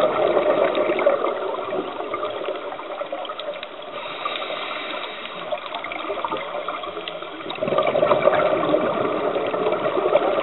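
Underwater sound of a scuba diver's exhaled bubbles rushing and gurgling past the camera, loudest at the start and again from about three quarters of the way in, with a quieter spell between. Faint scattered clicks run underneath.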